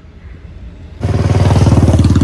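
A motor vehicle engine running close by with a fast, even pulse. It comes in suddenly and loud about a second in, after a second of low background rumble.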